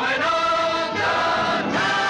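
Film soundtrack music: a choir singing long held notes, moving to a new chord about a second in and again near the end.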